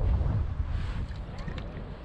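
Wind buffeting a GoPro microphone on a kayak: an uneven low rumble, loudest at the start, with a short hiss about a second in and a few faint ticks.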